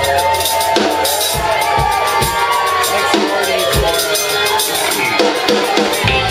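Live band playing an instrumental passage, led by the drum kit: kick drum, snare and cymbal hits under melodic lines that bend in pitch.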